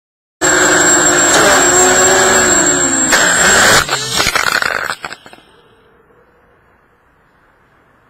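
FPV racing quadcopter's brushless motors whining loudly, their pitch rising and falling with the throttle. About four seconds in the drone crashes with a short clatter of knocks, the motors cut out, and only a faint hiss is left.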